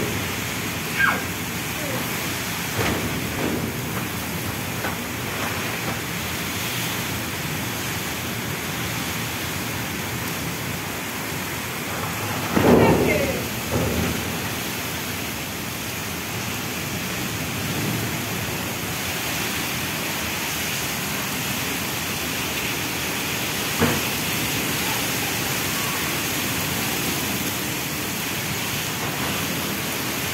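Heavy rain in a strong windstorm: a steady rushing hiss, swelling louder for a moment about thirteen seconds in.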